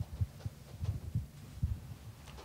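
About half a dozen soft, low thumps at irregular intervals: bumping or handling noise picked up by the table microphones.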